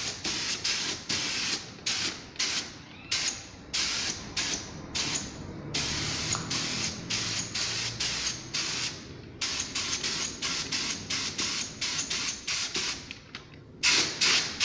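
Gravity-feed paint spray gun hissing in many short bursts as the trigger is pulled and released, with one longer unbroken spray of about three and a half seconds near the middle.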